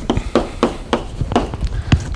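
Chalk writing on a blackboard: a quick, irregular run of sharp taps and short scrapes, with a louder tap near the end.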